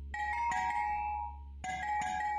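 Outro music of chime-like struck mallet notes. Two ringing chords come in quick succession at the start and another near the end, each dying away over a steady low hum.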